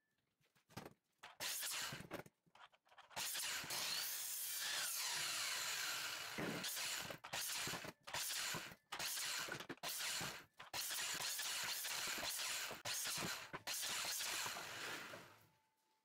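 Sliding compound miter saw cutting a 2x3 board to length, several cuts in quick succession, each stretch of cutting breaking off abruptly.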